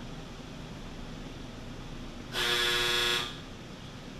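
A single steady horn-like honk about a second long, a little past the middle, over a low steady room hum.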